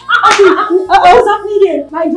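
Loud, excited voices exclaiming, with a sharp smack about a second in.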